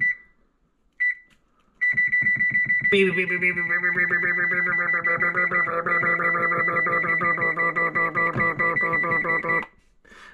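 Two short high beeps from an electric range's control panel as its timer keys are pressed. Then, from about two seconds in, a loud run of music with plucked, guitar-like notes over a steady high tone at the pitch of the beeps, which cuts off abruptly just before the end.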